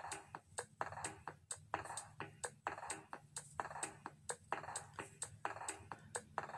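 A loaded shopping cart being pushed across a store floor, its wheels giving a light, even clicking, about four clicks a second.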